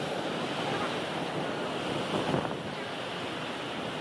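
Steady rushing of a nearby waterfall, swelling briefly just past two seconds in.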